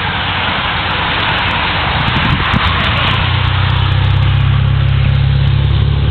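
A motor vehicle's engine running steadily under wind and road noise, its low hum growing louder about halfway through.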